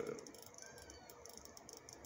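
Quiet room tone in a pause between words, with faint ticking.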